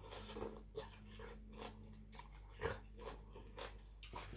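Close-up eating sounds: a mouthful of spicy som tam with khanom jeen rice noodles and crisp raw vegetables being sucked in and chewed, with a string of irregular wet clicks and crunches, the loudest about two and a half seconds in.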